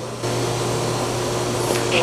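Steady machine hum with an airy hiss from operating-room equipment. The hiss grows louder a fraction of a second in, then holds even.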